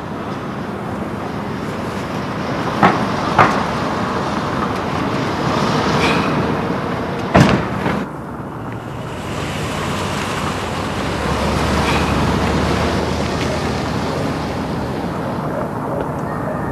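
Steady road traffic noise from passing vehicles, swelling and easing, with a few sharp knocks in the first half.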